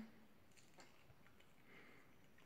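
Near silence: room tone, with a couple of faint soft clicks in the first second.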